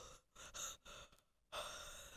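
A person breathing out in four short, breathy puffs right against a phone's microphone.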